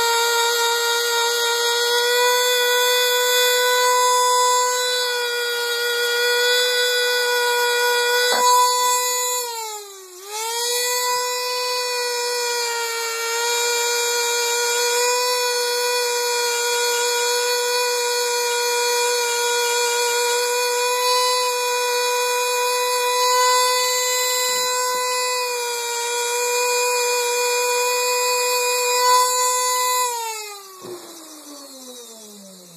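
Handheld rotary tool spinning a small sanding/polishing bit against the gun's body to smooth a rough cut: a steady high whine. About ten seconds in the pitch dips briefly and recovers, and at the very end it begins to wind down as the tool is switched off.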